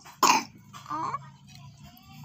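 A single short cough or throat-clearing from a person about a quarter second in, followed by faint, scattered low sounds.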